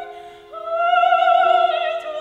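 Operatic soprano singing with chamber accompaniment of violin, clarinet, cello and piano. A held note ends right at the start, and about half a second in she enters on a new, louder note with a wide vibrato, over steady lower notes from the instruments.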